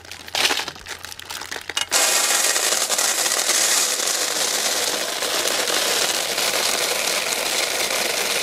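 Plastic sweet wrappers crinkling in short irregular crackles. Then, from about two seconds in, a loud, steady, dense rattle of Gems sugar-coated chocolate buttons pouring from a steel bowl.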